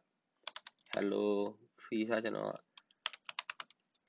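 Typing on a computer keyboard: a few keystrokes about half a second in, then a quick run of about seven keystrokes near the end.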